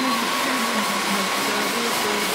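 Steady, loud hiss of a row of stage spark fountains spraying sparks.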